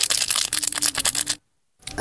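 Rapid crinkling and clicking of a foil drink-powder sachet being handled and emptied over a bucket of water. It cuts off abruptly to dead silence about one and a half seconds in.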